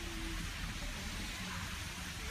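Steady outdoor background hiss with a low rumble underneath, no distinct event standing out.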